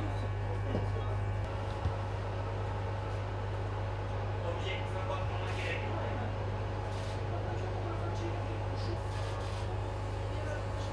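A steady low hum runs throughout, with people talking faintly in the background.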